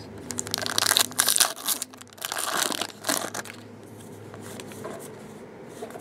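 Foil trading-card pack being torn open and its wrapper crinkled: a run of crackly rustling through the first three seconds or so, then quieter handling.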